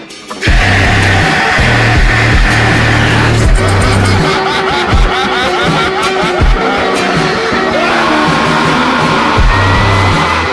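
Slowed-down hip-hop track with heavy, booming bass. The full beat drops back in about half a second in, after a brief break.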